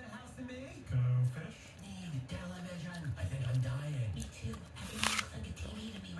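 Cartoon dialogue playing from a television's speakers and picked up in the room, with one short, sharp noise about five seconds in.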